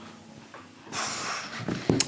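A short, sharp breath out: a sudden rush of air about a second in that fades over half a second.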